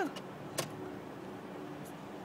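Faint steady hum inside a car cabin, with one sharp click a little after half a second in.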